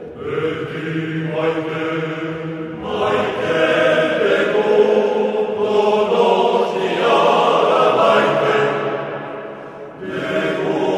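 A Basque male choir of about forty voices singing in sustained chords. The sung phrase swells in the middle and fades near the end.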